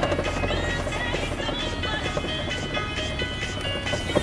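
Steady low hum of a car driving slowly, heard from inside the cabin, with music playing over it.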